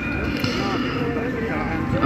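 Indistinct voices of people talking in the background over steady outdoor street noise, with some low thumps.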